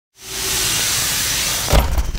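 A loud, steady hiss fades in and holds, ending in a short low thump just before speech begins.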